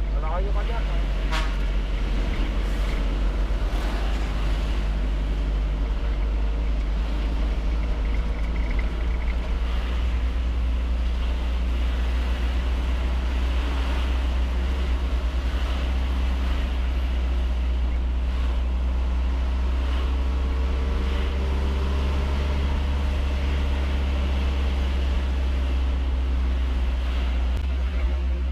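Steady low rumble of a vehicle's engine and road and wind noise while driving along a road.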